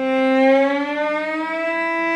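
Cello bowed on the A string, sliding slowly up from C to E in an audible glissando, then holding the E. It is a practice shift from first to fourth position, leading with the second finger and landing on the first finger.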